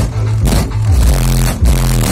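Loud bass-heavy music played through a Citroën Berlingo's SPL competition sound system, Hertz SPL Show subwoofers driven by a Hertz SPL Monster MP15K amplifier, heard from outside the van. Deep bass notes step from pitch to pitch under sharp drum hits several times a second.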